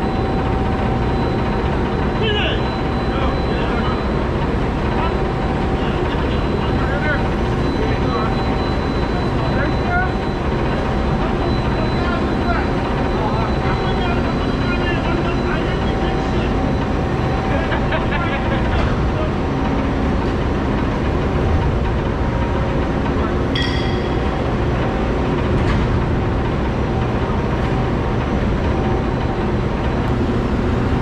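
Steady loud machinery noise in a steel-plate warehouse, with a thin steady whine, as an overhead crane carrying a plate-lifting clamp travels along the bay. There is a short, higher squeal about three quarters of the way through.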